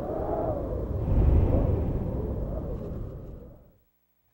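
Deep, low rumble with a wavering hum above it, swelling about a second in and then fading away to silence just before the end.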